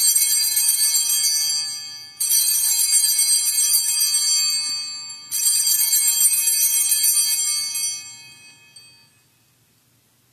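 Altar bells rung at the elevation of the chalice after its consecration: one ring already sounding, then two more about two and five seconds in, each a bright cluster of high tones left to fade. The last dies away about nine seconds in.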